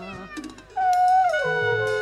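Free-improvised jazz from a small group of flugelhorn, trombone, bass clarinet, wordless voice and drums. A brief lull is followed, about three-quarters of a second in, by a new long note that slides downward and then holds, with lower notes joining beneath it and scattered light percussive hits.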